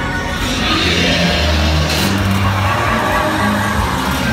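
Dark-ride soundtrack music playing loudly over held low bass notes, with a sharp hit about halfway through.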